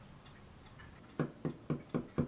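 Quiet for about a second, then a run of clock-like ticks, about four a second.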